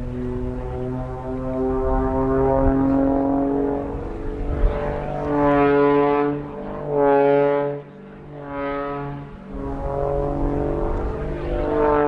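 Pitts Special S2S aerobatic biplane's piston engine and propeller droning overhead, the tone swelling and fading several times in the second half as the plane tumbles through its manoeuvres.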